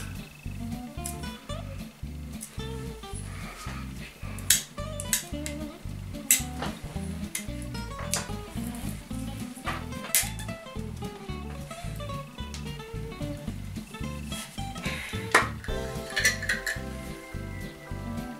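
Background music with a steady beat throughout, over several sharp clinks and scrapes of a metal utensil against a small jar as its seal is pried open.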